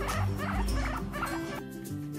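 Guinea pig squeaking repeatedly, about three short squeaks a second, over background music with a beat. The squeaks stop about a second and a half in and the music carries on alone.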